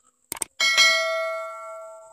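Subscribe-button sound effect: a quick double mouse click, then a bright bell ding just after half a second in that rings out and fades over about a second and a half.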